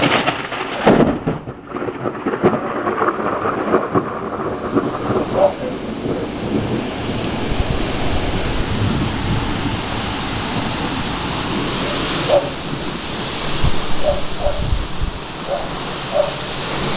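Thunder crashes in the first second after a lightning flash and rumbles on for several seconds, over steady rain whose hiss grows stronger from about halfway through.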